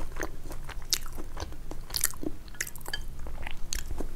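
Close-miked eating sounds: chewing a mouthful of instant noodles, with many short, irregular wet clicks.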